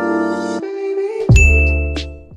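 Music followed, about a second and a half in, by a sound-effect hit: a deep falling boom together with a bright bell ding that rings on and fades. It is the notification-bell effect of a subscribe-button animation.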